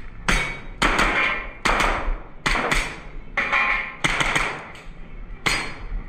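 Pistol shots fired in an indoor range: about nine sharp reports, unevenly spaced half a second to a second apart, some in quick pairs, each trailing off in a short echo from the room.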